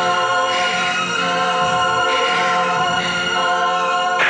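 Film background music: a choir singing long held notes over sustained chords, with no words.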